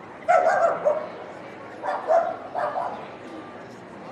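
A dog barking in three short bursts: one about a third of a second in, then two close together near the middle.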